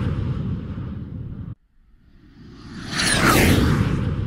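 A whoosh sound effect with a rumble and a falling whistle, played twice: the first fades and cuts off suddenly about a second and a half in, and the second swells up to its loudest about three seconds in, then fades.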